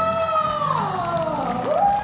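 A voice holding a long high note over background music: the note slides slowly down about a second and a half in, then a new note rises and is held near the end.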